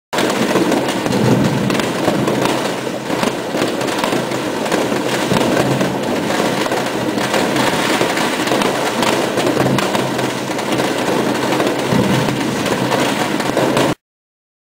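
Fireworks going off in a dense, unbroken barrage of overlapping bangs and crackles. The barrage stops abruptly at the end.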